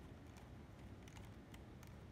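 A few faint, small clicks of a little Phillips screwdriver turning screws in the plastic underframe of a model locomotive, over near-silent room tone.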